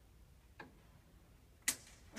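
Two clicks over a quiet hall hush: a faint one about half a second in and a sharp, loud one near the end.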